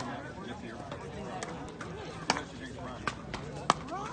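Pickleball paddles striking the plastic ball: a few sharp pops, the loudest about halfway through and near the end, as a rally is played.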